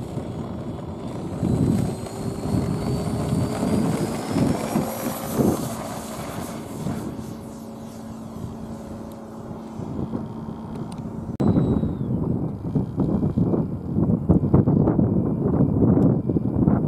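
Foam radio-control F-16 jet's electric motor and fan whining, the pitch rising over the first few seconds as it takes off and climbs away, then fading. About two-thirds of the way through, the sound cuts suddenly to wind buffeting the microphone.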